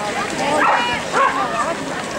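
A Belgian Shepherd dog giving two short, high calls, about half a second and a second in, over the chatter of people nearby.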